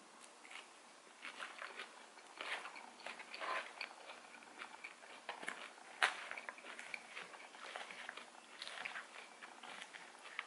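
Close-up chewing of a mouthful of leafy salad: soft, irregular crunches and mouth clicks. About six seconds in there is one sharper click as a metal fork reaches into the takeout container.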